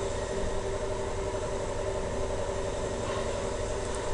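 Steady mechanical background hum with a few constant tones and an even hiss, unchanging throughout.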